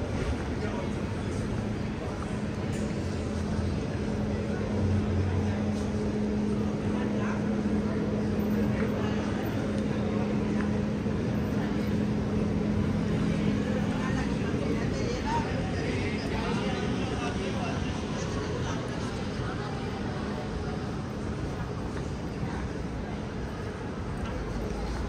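Busy city street ambience: a steady wash of traffic noise with passers-by talking indistinctly. A steady low hum runs through the first half and fades out about halfway.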